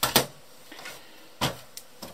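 Two short knocks, about a second and a quarter apart, as PLC hardware (ControlLogix modules and power supply) is moved and set down on a workbench.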